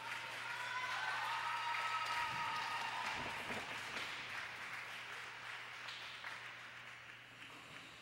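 Rink audience applauding, with a few drawn-out high cheers in the first seconds. The applause swells over about two seconds, then gradually dies away.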